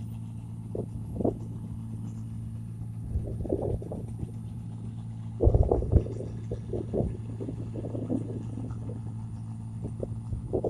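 Engine of a 1545 rice combine harvester running with a steady low drone while it harvests paddy. Irregular gusts of wind buffet the microphone, the strongest about five and a half seconds in.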